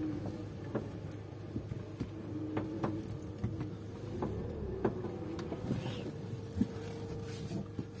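Car moving slowly over a rutted, muddy dirt road, heard from inside the cabin: a steady engine hum over a low rumble, with scattered sharp clicks and knocks throughout.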